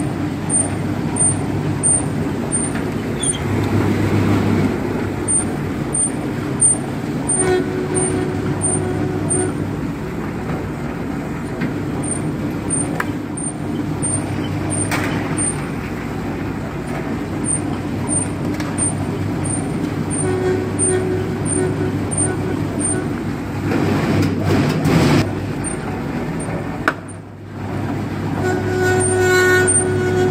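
Electric dough sheeter running: its motor and conveyor belts make a steady hum as dough is fed through the rollers, with a faint regular high tick about one and a half times a second. The hum dips briefly about three seconds before the end.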